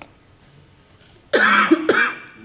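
A person coughing loudly, twice in quick succession, starting a little past the middle.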